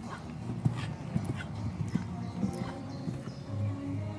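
A dressage horse's hooves striking the sand arena footing in a series of short, irregularly spaced beats, over music playing in the background.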